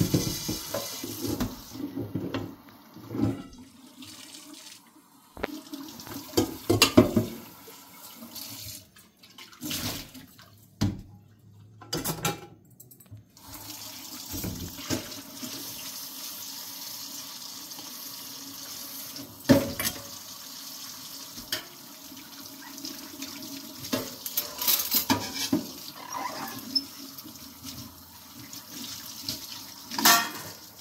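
Kitchen mixer tap running into a stainless steel sink while a metal pot and bowl are washed under it, with the water stream briefly interrupted and occasional sharp clanks of metal against metal.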